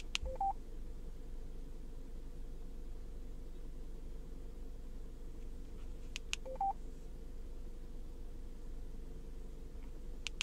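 Yaesu FTM-100DR radio control head giving key beeps as its buttons are pressed to enter a callsign: a sharp click followed by a short two-note beep, lower then higher, near the start and again about six seconds in. A faint steady hum runs underneath.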